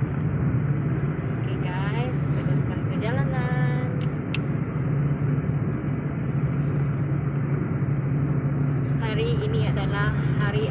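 Engine and tyre noise inside a moving car's cabin: a steady low drone with road hiss at an even level.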